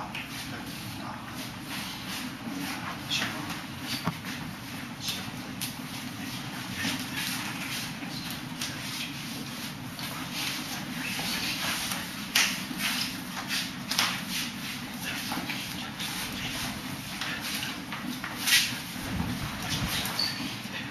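Forearms and hands slapping and brushing against each other in quick, irregular contacts during close-range Wing Chun sparring, with shuffling feet, over a steady low hum. A few sharper slaps stand out, about twelve and fourteen seconds in and near the end.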